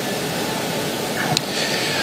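Steady hiss of background noise on a live broadcast link, with one faint click a little past halfway.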